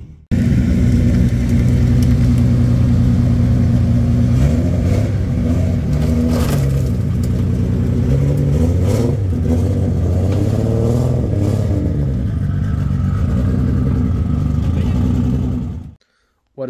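A vehicle engine running loud and steady, its revs holding, then rising and falling in the middle stretch. It starts suddenly just after the start and cuts off just before the end.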